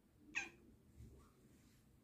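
A domestic cat gives one brief, high-pitched meow about a third of a second in.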